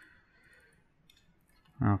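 A few faint computer mouse clicks about a second in, followed near the end by a man saying "okay".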